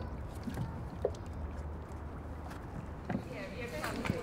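A few light knocks as the carved dragon head is handled and fitted onto a dragon boat's bow, over a steady low outdoor rumble. Faint women's voices come in near the end.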